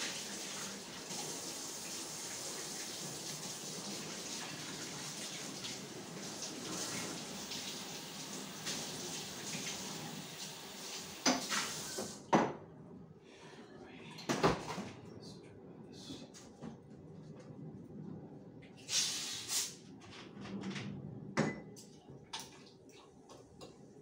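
Water running from a tap into a sink, cut off suddenly about twelve seconds in, followed by scattered clinks and knocks of dishes being handled.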